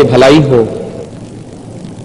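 A man's voice speaking, ending a phrase about two-thirds of a second in, followed by a pause with only faint room noise.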